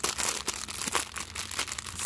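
Clear plastic bag of diamond painting drill packets crinkling as it is handled and turned over in the hands, with irregular crackles throughout.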